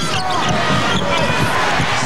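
Arena crowd noise during live basketball play, with a ball being dribbled on a hardwood court and voices shouting in the crowd.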